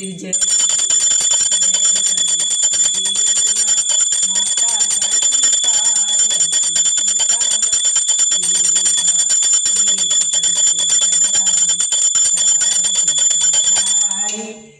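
A small brass puja hand bell rung rapidly and without pause for the aarti, a loud, steady, high ringing. A woman's voice sounds faintly beneath it.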